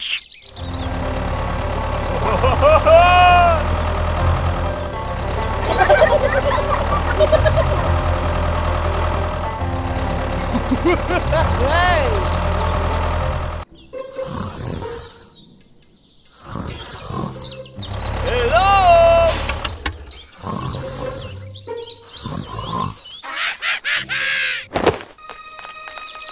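A low, steady tractor-engine drone, pulsing slightly, cuts off suddenly about halfway through. Over it come several squeaky cartoon-character voices that rise and fall in pitch. After the cut there are scattered short sounds and one more squeaky call.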